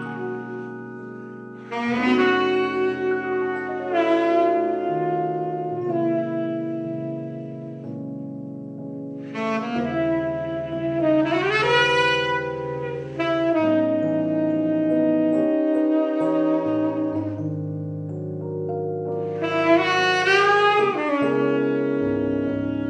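Saxophone and Roland RD-800 digital stage piano playing a slow jazz ballad: the saxophone plays phrases of long held notes over sustained piano chords, sliding up in pitch about halfway through and again near the end.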